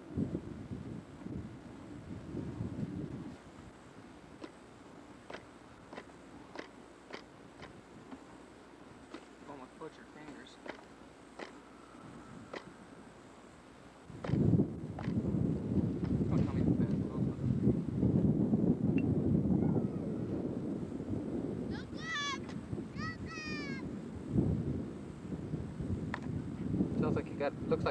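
Wind buffeting the microphone, loud and rough from about halfway on, with small clicks in the quieter first half and a bird's quick falling chirps near the end.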